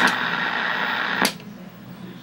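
Static hiss from the 1969 Sylvania color TV's speaker while its picture drops to snow. The hiss cuts in with a click, runs steadily for about a second and a quarter, then stops with another click.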